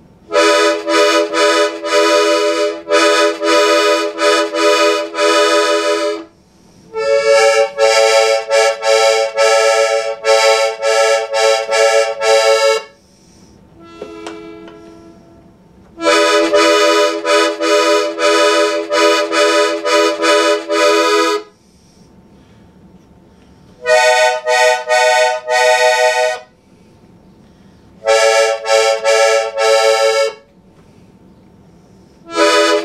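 Hohner Carmen II piano accordion played on its treble keys in five held phrases of steady, reedy notes, each a few seconds long, with short pauses between them.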